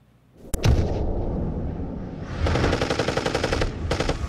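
Automatic-gunfire sound effect: after a short silence, a sharp crack about half a second in, then a dense, rapid rattle of shots that gets heavier partway through.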